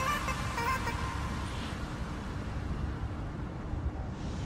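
Background music fading out in the first second, leaving a steady low outdoor rumble.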